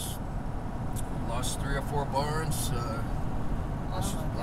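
Steady low road and engine rumble inside a moving vehicle's cab, with people talking over it about a second in.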